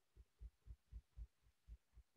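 Near silence, with faint low thumps pulsing evenly about four times a second.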